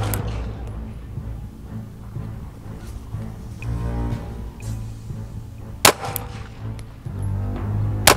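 A single pistol shot, sharp and short with a brief ringing tail, comes about six seconds in, with background music running underneath.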